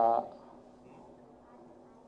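A man's voice stops just after the start, then a faint, steady low electrical hum fills the pause.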